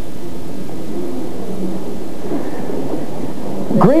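Steady hiss and low rumble with no distinct event: the background noise of an old, grainy video-tape recording during a pause in a lecture.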